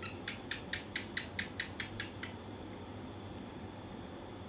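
A quick run of about a dozen sharp, high clicks, about five a second, stopping after about two seconds, over faint steady background hiss.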